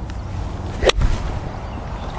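A golf club swung at full speed and striking a ball off turf: a brief rising swish, then one sharp crack of impact about a second in.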